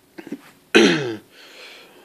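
A man clearing his throat once, loudly, the sound dropping in pitch, about three-quarters of a second in.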